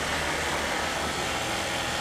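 Motorcycle engine running steadily at low speed in slow, congested city traffic, with the hum of surrounding cars.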